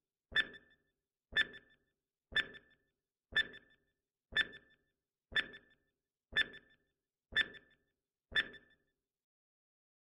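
Countdown timer sound effect: a short, sharp tick with a brief bright ring, repeated evenly once a second, nine times, then stopping about a second before the end.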